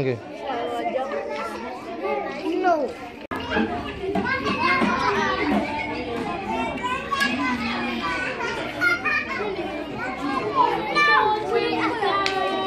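Many children's voices chattering and talking over one another, with no single clear speaker; the sound breaks off abruptly for an instant about three seconds in, then carries on.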